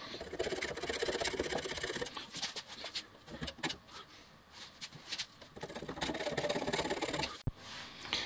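Hand scraper cutting the cast iron base of a mini-lathe headstock: rapid scratchy strokes for the first two seconds, quieter for a few seconds, then another run of strokes about six seconds in.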